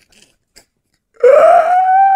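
A second or so of quiet, then a person's voice in a long, high, held cry that rises in pitch as it starts.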